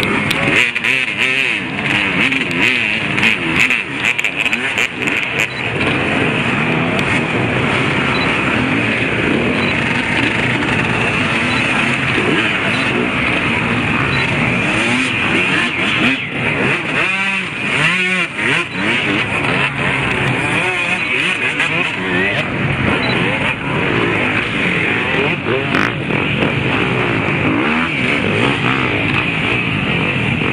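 A crowded pack of off-road dirt bike engines idling and revving all at once, many throttles blipping over one another as the riders work through a muddy, congested section. One bike close by revs up and down hard about two-thirds of the way through.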